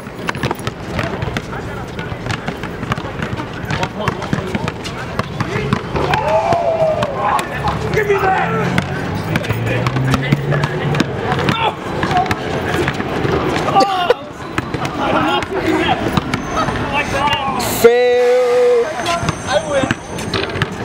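Street basketball on an outdoor court: a ball bouncing and players' feet knocking and scuffing on the court, with scattered shouts and voices. Near the end a steady pitched tone sounds for about a second and a half.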